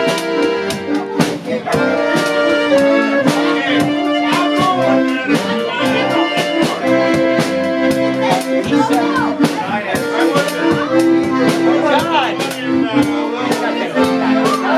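Button concertina playing a melody over sustained reedy chords, with a drum kit keeping a steady beat.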